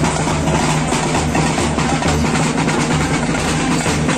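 Music with a steady drum beat and a sustained low bass, loud and even throughout.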